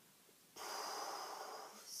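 A woman taking a deep, audible breath in, about a second and a half long, starting about half a second in.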